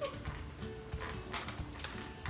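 Scattered light clicks and knocks of snow crab legs being handled and pulled from a foil tray, over faint background music.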